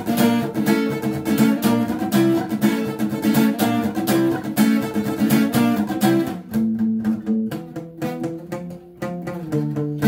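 Acoustic guitar chords strummed in a steady rhythm. About six seconds in the playing turns softer and sparser, then fills out again just before the end.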